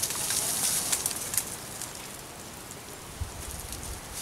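Dry leaves and twigs crunching and crackling underfoot as someone scrambles up a dry, rocky slope, busiest in the first second and a half and then fading. A brief low rumble near the end.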